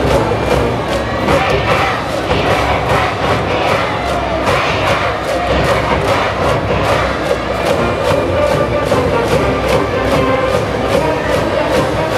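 A school brass band plays a high school baseball cheer song over a steady drum beat, while a large cheering section of students chants and shouts along.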